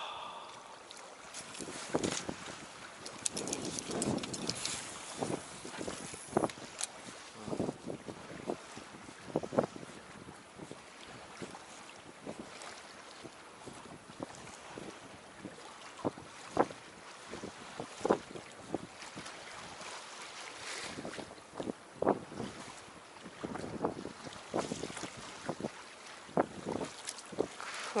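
Small waves lapping against the hull of a small boat, with wind on the microphone and irregular sharp knocks scattered throughout.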